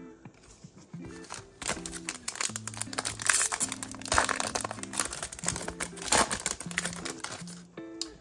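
Trading card pack wrapper crinkling and tearing as it is opened by hand, a dense crackle from about a second and a half in until shortly before the end, over background music.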